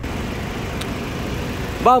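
Honda City's 1.5-litre i-VTEC four-cylinder engine idling steadily with the bonnet open, running very smoothly.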